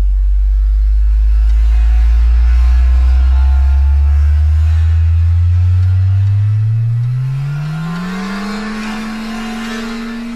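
A deep, loud sustained tone gliding steadily upward in pitch from a bass rumble to a low hum, levelling off about eight seconds in. A faint hiss swells beneath it in the latter half.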